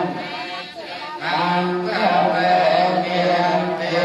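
Buddhist chanting held on a steady, droning pitch. It drops away briefly just under a second in, then resumes.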